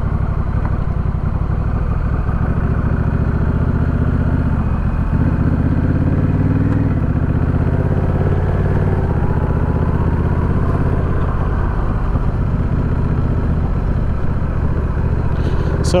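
Honda Rebel 1100 DCT's parallel-twin engine through a short aftermarket Coffman's Shorty exhaust, heard from the rider's seat while riding at low speed. The engine pitch climbs under light throttle from about four seconds in, then drops back at about seven seconds as the dual-clutch gearbox shifts up, and holds steady after that.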